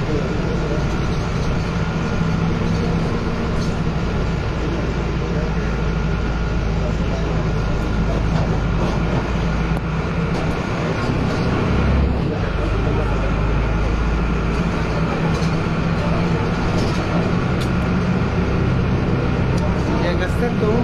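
City bus riding along, heard from inside the cabin: steady engine rumble and road noise, with a brief louder low bump about twelve seconds in.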